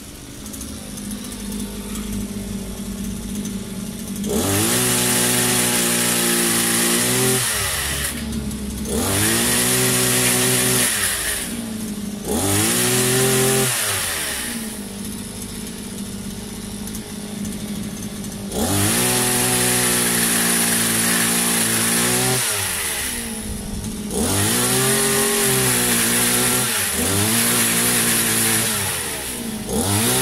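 Small engine of a multi-tool pole chainsaw idling, then throttled up five times for a few seconds each as the chain cuts overhead branches, dropping back to idle between cuts.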